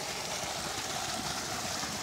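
Steady rush of water pouring out of a wooden flume into churning white water below.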